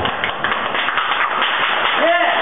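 A small group of people clapping their hands, a quick run of overlapping claps.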